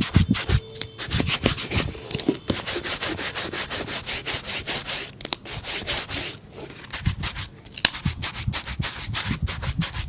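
Shoe brush scrubbing a leather shoe in quick back-and-forth strokes, about six a second. The bristles rasp on the leather and the rubber sole, with a few brief pauses between bouts.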